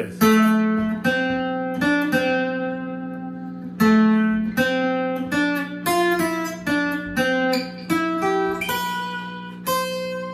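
Acoustic guitar playing a slow single-note melody, each note plucked and left to ring out, about one to two notes a second.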